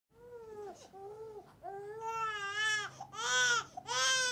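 Newborn baby crying in a run of short, high wails, each about half a second to a second long, growing louder over the few seconds.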